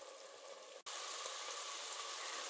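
White wine simmering and reducing over softened onion and garlic in a pot: a steady sizzling bubble. A brief break just under a second in, after which it is a little louder.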